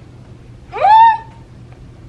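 A woman's closed-mouth hum, "mm", rising in pitch and then held briefly, about halfway through: the first half of an affirming "mm-hmm".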